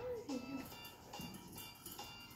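A man's closed-mouth 'mm' hum while chewing a mouthful of food, gliding down in pitch near the start, with a fainter one about a second later.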